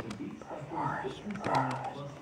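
Indistinct speech, a person talking low, as from a radio broadcast.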